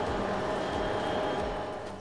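Diesel freight locomotives moving past: a steady running noise with a faint hum, easing off slightly near the end.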